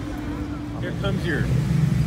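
Vehicles cruising slowly past on the road, with a deep engine rumble swelling from about a second in as a pickup truck draws near.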